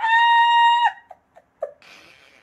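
A woman laughing: a high-pitched squeal held for about a second, cut off suddenly, followed by a few small clicks and a soft breathy exhale.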